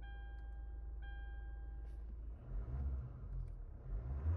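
Hyundai Tucson engine idling just after a start, with an electronic dashboard warning chime sounding briefly at the start and again for about a second. From about two and a half seconds in the engine is revved, its rumble rising.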